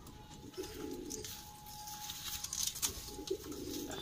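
Domestic pigeons cooing twice in low, throbbing calls, the second running on to the end.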